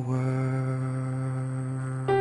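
A singer holding one long, steady low note in a worship song, slowly fading.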